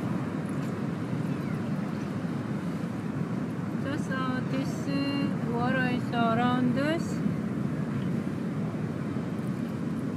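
Steady low rumbling background noise, with a voice rising and falling in pitch for a few seconds around the middle.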